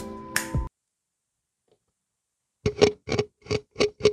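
Guitar background music that cuts off abruptly under a second in. After a silent gap, a handheld microphone is tapped about half a dozen times, roughly three taps a second, heard through the soundcard near the end.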